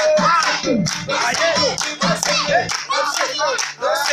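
Up-tempo pop song with a singing voice over a steady beat of about two strikes a second, with hand clapping.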